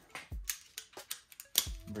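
A ratchet and 13 mm socket being handled: a series of about half a dozen sharp metallic clicks, with a couple of dull knocks.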